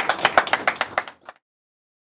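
A small group of people clapping, a quick run of sharp claps that cuts off suddenly a little over a second in.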